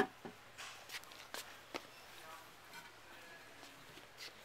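A sharp clink of the porcelain toilet tank lid right at the start, then a few faint knocks and clicks from handling it.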